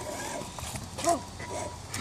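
Electric RC rock crawler (Losi Night Crawler) running slowly as it climbs log rounds, its motor and gears quiet under light clicks and knocks of the tyres on the wood. A child's short vocal sound comes about halfway through.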